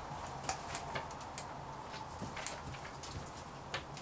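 Faint, scattered small clicks and ticks over a low steady hum.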